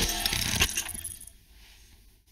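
Sound effects of a channel's logo intro animation: a run of sharp clicks and hits ending with a last hit about two-thirds of a second in, then fading to a faint tail.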